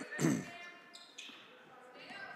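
Basketball court sounds in a gym: a short shout about a quarter second in, then quieter ball bounces and high squeaks of sneakers on the hardwood floor.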